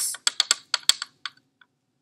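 A quick, irregular run of light clicks and taps from handling a plastic Petri dish and a cotton swab on a lab bench during the swabbing of an agar plate. The clicks stop about a second and a half in.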